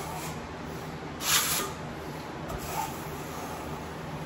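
Wide steel skimming blade scraping wet joint compound across a wall: one loud swish about a second in, with fainter strokes before and after.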